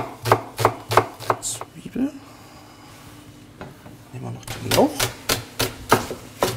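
Chef's knife chopping a red onion on a plastic cutting board: about three sharp knocks a second, a pause of two or three seconds, then quicker chopping near the end.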